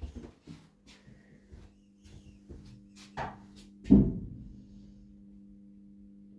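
Lift machinery in a stopped passenger lift car: a steady electrical hum with light clicks and knocks, and one heavy thump about four seconds in.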